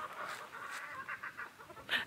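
Backyard chickens clucking faintly, a few short calls near the middle.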